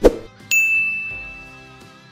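Subscribe-button sound effect: a sharp click, then about half a second later a single high bell ding that rings and fades away, over soft background music.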